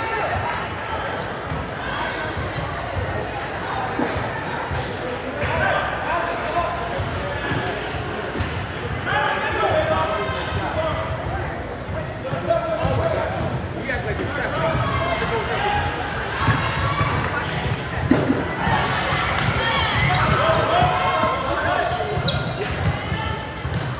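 A basketball being dribbled on a hardwood gym floor, with repeated short bounces, sneaker squeaks and players' and spectators' voices echoing in a large gym.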